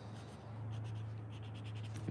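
Faint scratching of a coloured pencil on paper, a run of light quick strokes starting about half a second in, over a steady low hum.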